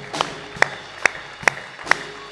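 A man clapping his hands in a steady rhythm, sharp single claps about two and a half times a second.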